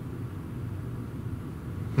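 Steady low rumble of a car engine idling, heard from inside the car.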